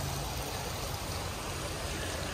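Water splashing steadily from a tiered fountain into its basin.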